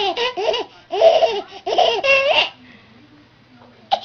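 Baby laughing in several loud, high-pitched bursts that stop about two and a half seconds in; a single short, sharp sound follows just before the end.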